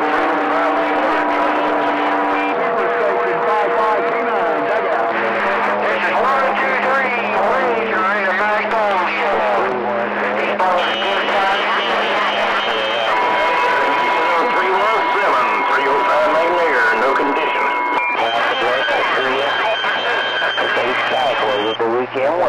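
CB radio receiver on channel 28 picking up skip: several stations transmitting over one another, a jumble of garbled, overlapping voices. Steady heterodyne whistles sit on top, changing pitch several times as carriers key up and drop, so the channel is doubled and blocked.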